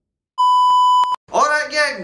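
A loud, steady electronic beep tone lasting just under a second, starting after a moment of silence and cutting off abruptly. A man starts speaking right after it.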